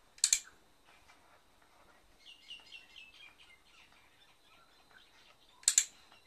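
A handheld dog-training clicker clicks twice, about five seconds apart, each a sharp double click, marking the dog's chin rest. In between, a bird gives a quick run of short chirps.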